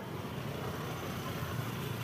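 Steady street noise dominated by a low rumble of motorcycle engines running among a crowd of onlookers.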